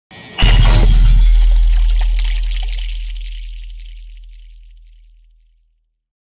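Produced intro sound effect: a short lead-in, then a sudden loud crash with a deep boom beneath. Its bright ringing and low rumble fade out over about five seconds.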